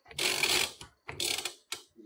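Scraping, rustling handling noise in three bursts: a long one lasting most of a second, a shorter one, then a brief scrape.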